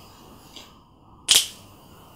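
A single sharp hand clap a little past the middle, loud and quickly dying away, over faint room hiss.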